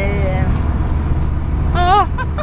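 A woman singing a long held note that slides down and stops about half a second in. A steady low rumble of car road noise follows, and near the end she lets out a short, loud, rising vocal whoop.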